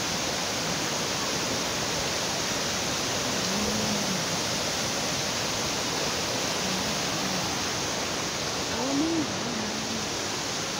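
Pulang Bato waterfall rushing steadily, an even wash of falling water.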